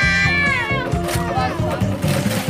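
A child's long, high-pitched squeal, ending just under a second in, over background music.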